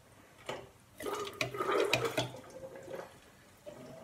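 Sanitizing solution gurgling and splashing as it runs through plastic siphon tubing and a bottling wand into a plastic graduated cylinder, for about a second and a half from a second in. A short click comes just before.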